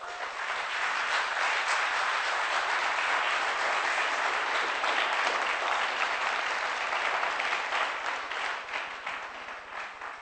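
Audience applauding. It swells up within the first second, holds, then dies away over the last two seconds.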